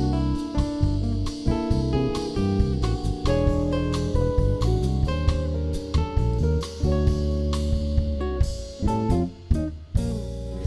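Live band playing an instrumental introduction in a jazzy Brazilian style: plucked acoustic guitar, electric bass, drum kit and keyboard. The playing thins out and drops in level near the end, just before the vocal comes in.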